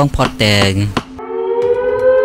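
A narrating voice for about the first second, then a held, eerie musical tone enters, rising slightly and then holding steady.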